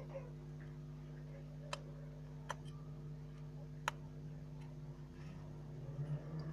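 A pry tool clicking against the opened frame and parts of a Nokia Lumia 930 phone as it is levered at: three sharp clicks spread over a couple of seconds, with a few fainter ticks, over a steady low electrical hum.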